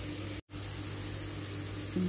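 Chopped onion, garlic and ginger frying in oil in a frying pan: a steady soft sizzle that drops out for an instant about half a second in.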